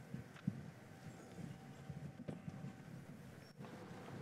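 Faint shuffling, scattered footsteps and light knocks of an audience getting to its feet, with no speech.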